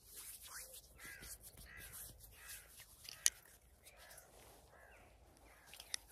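Faint, repeated cawing of crow-type birds, short calls coming about every half second, with one sharp click about three seconds in.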